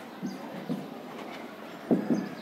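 Marker pen writing on a whiteboard: soft strokes and a few light taps, over steady classroom room noise.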